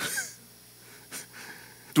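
A man's short breathy laugh at the start, then a quiet room.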